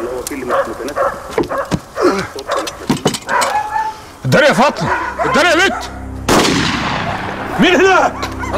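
Dogs barking over and over, coming thick and loud from about four seconds in. A single sharp, loud bang with a long echoing tail comes about six seconds in.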